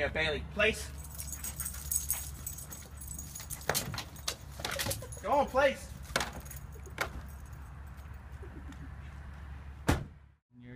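Metal jingling, with a few sharp knocks and two short bits of speech, over a steady low hum.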